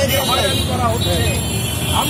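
A person speaking in the open air, over a steady hum of road traffic.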